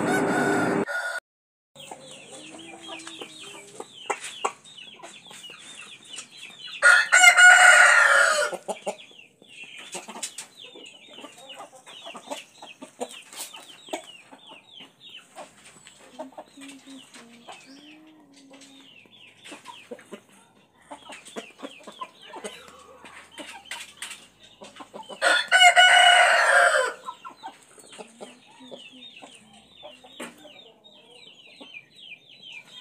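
Rooster crowing twice, each crow about a second and a half long and some eighteen seconds apart. Faint, short, high chirps run through the gaps between the crows.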